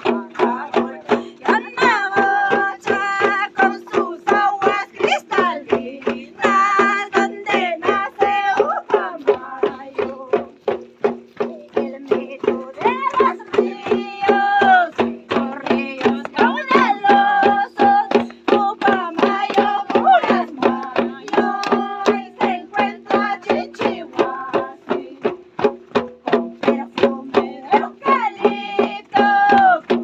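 Andean Santiago festival music: a hand drum beating a steady, quick pulse of about two to three strokes a second under a held low drone, with high voices singing short repeated phrases over it.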